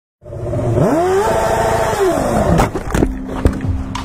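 Sport motorcycle engine revving up, holding high revs, then dropping off, followed by a crash: several sharp impacts as the bike and rider hit a car.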